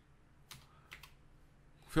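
A few separate keystrokes on a computer keyboard, spaced out as a line of code is typed.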